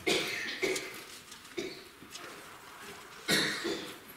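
A man coughing and clearing his throat several times, the strongest cough at the very start and another near the end.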